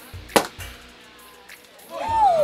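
Champagne cork popping out of the bottle: one sharp, loud pop about a third of a second in.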